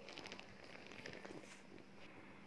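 Near silence, with faint irregular rubbing of a rolling pin rolling out roti dough on a floured plastic board.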